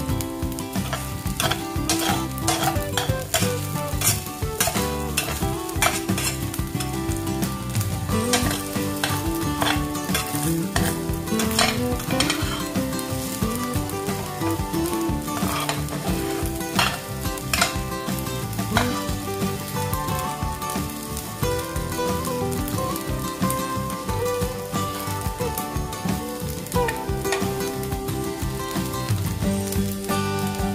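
Rice being stir-fried in a stainless steel pan, sizzling steadily. A metal spatula scrapes and knocks against the pan many times as it turns the rice.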